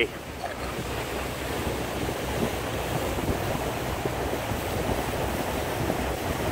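Steady rush of wind and water from a motorboat under way on open water, with wind buffeting the microphone.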